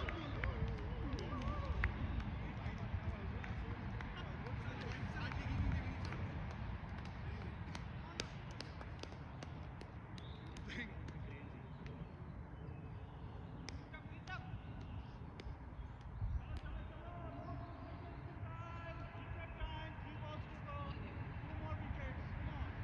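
Distant voices of people calling out across an open field, clearest near the start and again near the end, over a steady low rumble.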